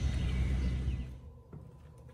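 Low outdoor rumble of wind on the microphone for about a second, then a cut to quiet room tone.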